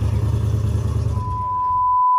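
Low steady outdoor rumble, then about a second in a steady electronic test-tone beep starts and holds, the tone that goes with a colour-bar test pattern.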